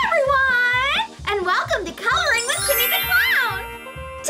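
Upbeat children's intro jingle: a steady bass beat under a high, swooping singing voice.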